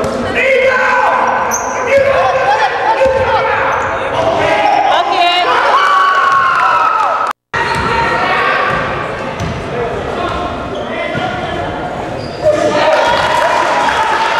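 Basketball game in a gym: a ball dribbled and bouncing on the hardwood floor amid players' and spectators' voices, echoing in the large hall. The sound cuts out completely for a moment about halfway through.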